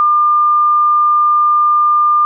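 A steady pure sine test tone a little above 1 kHz, played as a two-source interference demonstration. As the listener's head moves through antinodes and nodes, the tone should grow louder and weaker.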